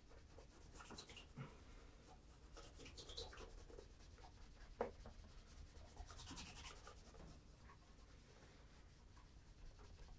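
Cloth wrapped over fingers rubbing in small strokes on the leather toe of a Cheaney Welland oxford, buffing wax toward a mirror shine. Faint, with one light knock a little before the middle.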